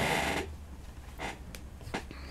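Brief rustle of fabric being handled, then a few faint soft taps and clicks as craft pieces are moved about on a cutting mat, over a low steady hum.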